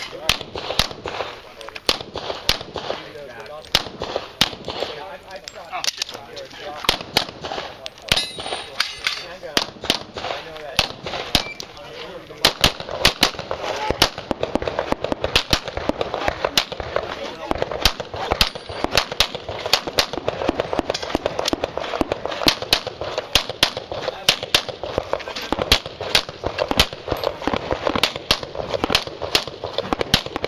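Pistol fired in fast strings of shots at a practical-shooting stage, many shots close together, the firing getting denser and louder from about halfway through.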